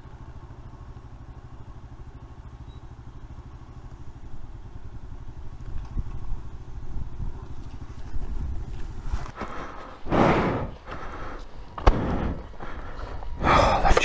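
Single-cylinder motorcycle engine idling with a steady low pulsing rumble, growing louder from a few seconds in, with several loud bursts in the last few seconds.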